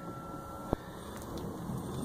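A single sharp metal click from the steel deposit door of a mailbox drop safe being handled, just after a faint thin high tone that stops with it, over low steady background noise.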